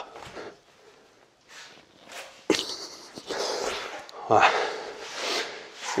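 A man breathing hard after a set of one-arm suspension-strap push-ups, with rustling as he gets up from the plank and kneels on the floor mat. The loudest part is a noisy patch that begins suddenly about halfway through and lasts just over a second and a half.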